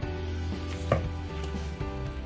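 A single sharp knock of a small garden trowel on a hard surface, about a second in, over steady instrumental background music.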